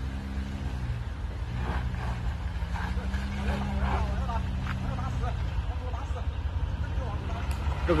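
A Great Wall Tank 300 SUV's engine pulls it up a steep dirt slope after a tight turn. It is a steady low hum whose pitch rises a few seconds in and eases off again later as the throttle is worked.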